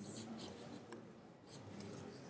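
Faint rustling with a few soft, brief clicks, in keeping with mouse clicks choosing an item from a menu.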